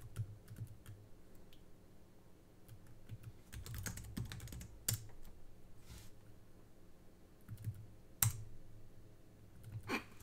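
Computer keyboard being typed on, faintly, in short runs of keystrokes, with a denser flurry about four seconds in and two sharper key strikes near five and eight seconds.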